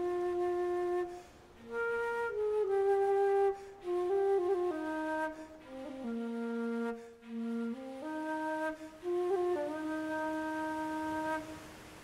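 Music: a single flute-like woodwind plays a slow melody of long held notes. The melody dips to its lowest notes about halfway through, then climbs again.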